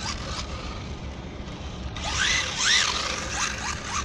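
Electric motor of an RC drift car whining up and down in quick throttle bursts: several short rising-and-falling whines in the second half, over a steady low rumble.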